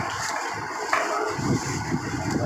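Cardboard appliance boxes being handled, with a single knock about a second in, over steady background noise.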